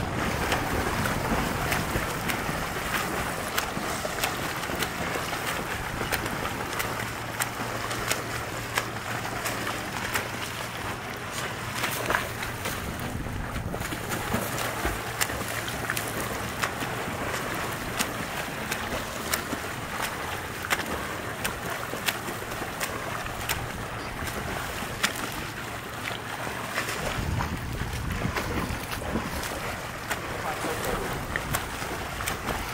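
Swimmers doing freestyle in a pool: arm strokes and kicks churning the water, with a steady wash of noise and many short, sharp splashes.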